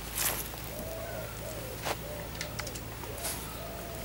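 A dove cooing, a low phrase repeated several times. A few brief swishes and a click cut across it, the loudest just at the start.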